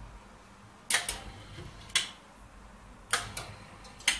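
Mechanism of a small Dolce Gusto capsule sealing machine clacking: five sharp clicks, some in quick pairs, about once a second.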